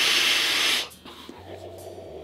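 A long, steady hiss of air drawn through a sub-ohm tank's mesh coil as the vape mod fires, cutting off just under a second in. A much quieter, breathy exhale follows.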